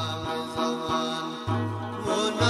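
Ginan devotional music, here an instrumental stretch of steady held chords over a deep bass note; the bass drops out in the middle and comes back about one and a half seconds in.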